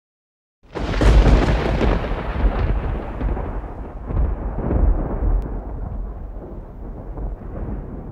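A thunder-like crash that starts suddenly about half a second in, with a sharp crackle, then rolls on as a deep rumble that slowly fades and cuts off abruptly at the end.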